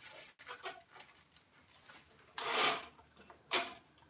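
Quiet handling of a flimsy metal-pole wardrobe rack's poles and plastic connectors during assembly: a few faint clicks, then a short rustling burst about two and a half seconds in and a briefer one near the end.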